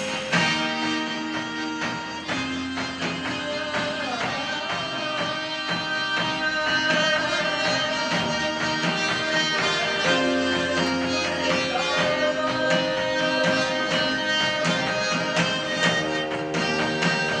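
Live band playing: electric guitar, drum kit, bass and harmonium, held chords changing every couple of seconds over a steady drum beat.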